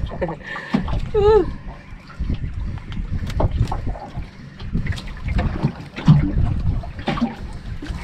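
Wind buffeting the microphone and water splashing against the hull of a small outrigger boat at sea, with scattered short clicks. A brief voice sound comes about a second in.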